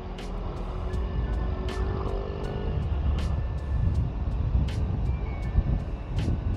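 Suzuki GSX-S150 single-cylinder motorcycle being ridden along, its engine and the wind making a steady low rumble. Background music with a regular beat plays over it.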